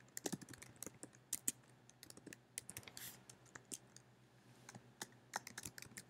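Faint typing on a computer keyboard: quick, irregular keystrokes entering text.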